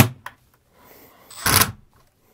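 Cordless drill-driver driving screws into the plastic ceiling shroud of an RV air conditioner. It stops with a sharp click right at the start, then runs again in one short burst about a second and a half in.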